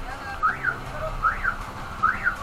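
A repeating alarm-like chirp that glides up in pitch and straight back down, sounding a little more than once a second, over a low steady hum.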